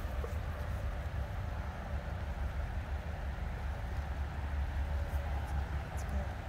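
Wind buffeting the microphone: a steady, unevenly pulsing low rumble, with no other clear sound.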